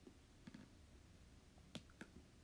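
A few faint, short clicks against near silence, the sharpest near the end, from something being handled close to the microphone.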